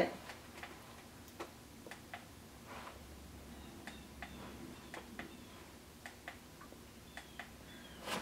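Faint, irregular light clicks and a few short, faint squeaks in a quiet room.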